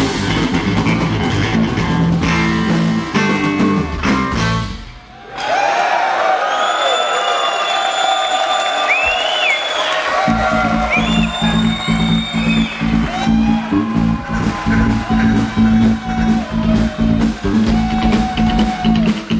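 A rock band playing live on electric guitar, electric bass and drum kit. About five seconds in the band drops out for a moment, leaving the electric guitar alone on sliding, bending lead lines. Bass and drums come back in about five seconds later with a steady pulse.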